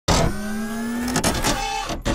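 Logo intro sound effect: a sudden loud start, then a steady mechanical-sounding hum whose pitch creeps slowly upward, broken by a few sharp clicks about a second in, then a higher steady tone. It breaks off briefly just before the end and starts again.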